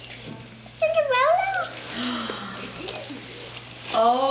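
A young girl's short, high-pitched excited squeal, dipping and rising in pitch, about a second in, followed by soft rustling of costume fabric being handled.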